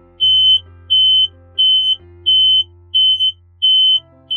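Smoke alarm sounding: a high-pitched electronic beep repeating evenly about one and a half times a second, six beeps, over soft background music.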